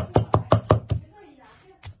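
Cleaver chopping garlic on a wooden chopping board: a quick run of about six sharp chops in the first second, then a pause and one more chop near the end.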